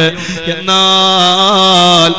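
A man's voice chanting a sermon in a drawn-out melodic style into a microphone. He breaks off briefly, then holds one long note to the end, with a slight waver in the middle.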